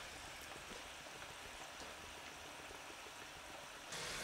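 Faint, steady sizzling of food frying in a pan on the hob.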